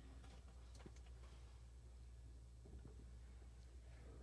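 Near silence: room tone with a steady low hum and a few faint scattered clicks and rustles.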